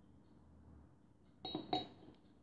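Two quick clinks about a third of a second apart, the second the louder, as a small paintbrush is put down against a hard container.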